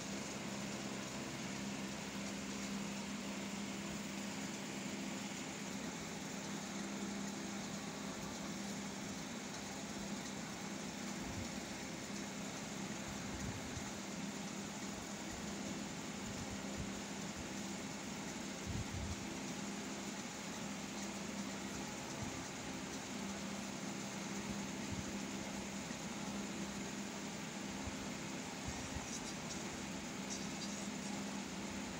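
A steady low mechanical hum over an even hiss, the sound of a fan or motor running, with a couple of faint soft knocks.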